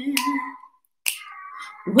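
Two finger snaps about a second apart, keeping the beat, as a woman's held sung note fades out; her singing starts again near the end.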